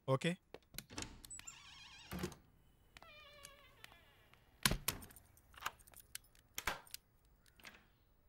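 A short wavering pitched tone, then a second pitched tone that falls slightly, followed by several sharp clicks and knocks of a door's lock and latch as the door is opened.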